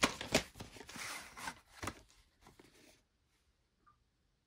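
A VHS cassette being handled and turned over as it comes out of its case: sharp plastic clicks and rustling scrapes over the first two seconds, thinning to a few small taps.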